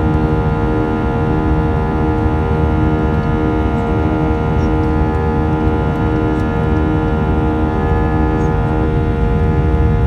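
Airliner turbofan engines heard from inside the cabin during the climb after takeoff: a loud, steady drone of low rumble with a stack of constant humming tones held unchanged throughout.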